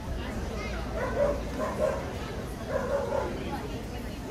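A dog barking a few short barks, about three or four within a couple of seconds, over steady crowd chatter in a large hall.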